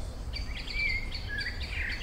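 A songbird singing: a quick run of high chirps and short whistled notes that starts about a third of a second in.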